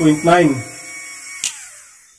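A man speaking Tagalog for the first half second, then a faint steady high electrical whine. A single sharp click comes about one and a half seconds in, and the sound then fades away.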